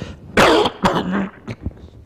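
A man coughing and clearing his throat: one loud, harsh cough about half a second in, then a second, shorter cough with a brief throaty grunt just after.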